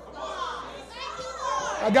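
Fainter, higher-pitched voices in the room, likely from the congregation, calling or talking during the preacher's pause. Near the end the preacher's much louder voice comes in.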